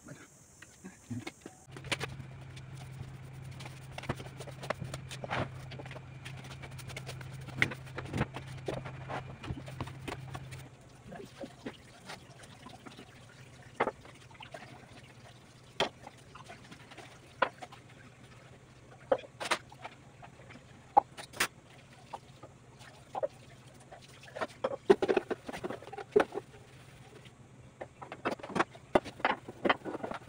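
Dishes and pots clinking and knocking at a kitchen sink during washing up, in scattered taps with a denser clatter near the end. A steady low hum runs through the first third.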